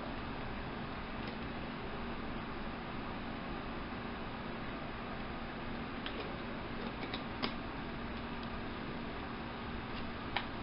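Steady room noise with a faint low hum, with a few light clicks about six to seven and a half seconds in as vitamin bottles are handled.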